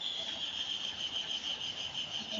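A steady, high-pitched insect trill that pulses slightly, starting suddenly and carrying on without a break.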